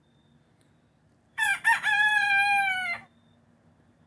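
A bantam (garnisé) rooster crowing once, for about a second and a half: a short broken opening, then a long held note that dips slightly in pitch at the end.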